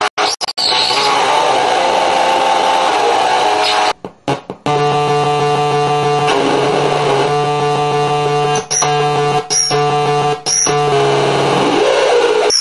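Buzzy electronic synthesizer music of sustained, droning chords, with a brief dropout about four seconds in and a few sharp cuts near the end.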